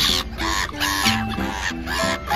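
Background music with harsh, repeated calls of black-headed gulls over it, about two calls a second.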